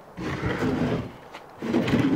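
Plywood pull-out drawer under a truck-bed sleeping platform being slid open, wood scraping along wood. It comes in two pulls: one starting just after the start that lasts most of a second, and a second starting near the end.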